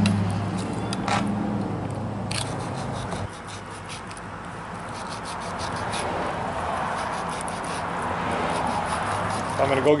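A fillet knife scraping and slicing along a wooden cutting board as a catfish fillet is cut free, with a few short scrapes and taps. A steady low hum runs through the first three seconds, then drops away.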